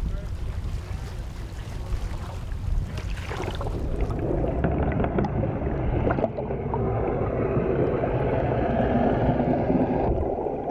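Sea water slapping and rushing at the surface over a boat's low engine rumble. About four seconds in, the sound turns muffled, as heard from under the water: a dense crackling and rushing of churned water and bubbles over the rumble.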